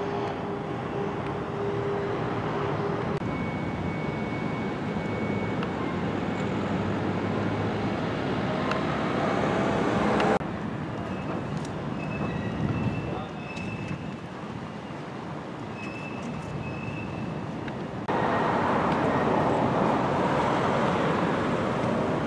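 Outdoor road traffic noise: a steady rush of passing vehicles. It drops abruptly about halfway through and grows louder again near the end.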